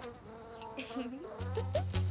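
Cartoon bee buzzing sound effect, a thin buzz whose pitch wavers down and back up as it flies. Low steady music notes come in about one and a half seconds in.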